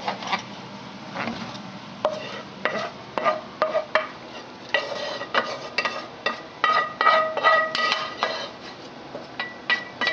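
Cooking utensils, a spatula and a metal spoon, stirring and knocking against a large stainless steel stockpot of gumbo. Quieter stirring for the first couple of seconds, then a run of sharp clinks and scrapes, several leaving a brief metallic ring from the pot.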